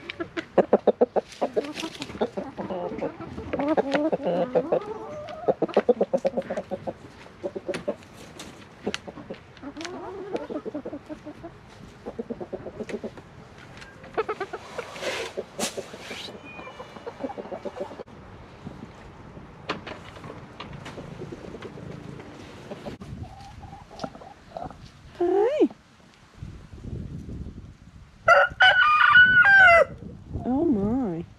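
Chickens clucking and calling, with frequent sharp clicks; near the end a rooster crows loudly in one long call.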